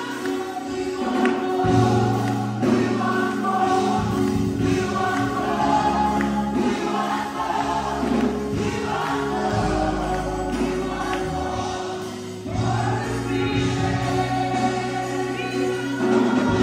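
Gospel worship song: many voices singing together over instrumental backing, with a low bass line coming in about two seconds in.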